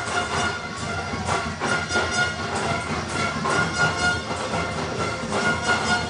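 Football stadium crowd noise with sustained, steady horn-like tones sounding from the stands.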